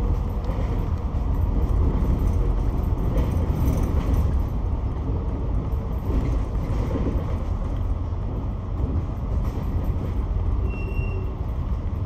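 Double-decker bus in motion, heard from inside on the upper deck: a steady low engine and road rumble.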